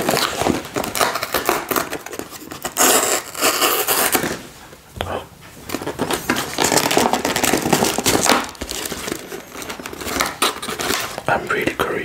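Paperboard ice cream carton handled and pried open close to the microphone: crinkling, rubbing and tearing of the card flap, with a brief lull about four and a half seconds in.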